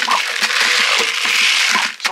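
Dry chicken feed pouring and rattling out of a plastic tube into a plastic feeder: a steady, loud rush that stops near the end.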